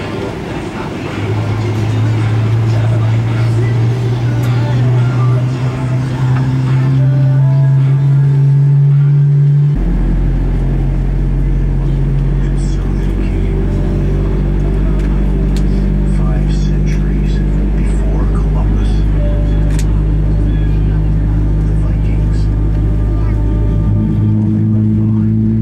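Background music of sustained, slowly shifting notes. About ten seconds in it changes abruptly, and a steady deep rumble of the airliner's cabin comes in beneath it and holds.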